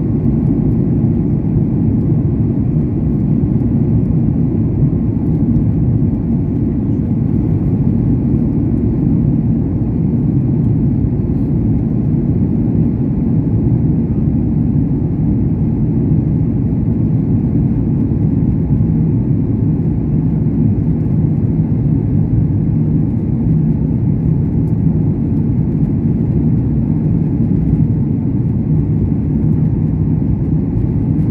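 Steady low rumble of engine and airflow noise inside an airliner cabin during the descent to land.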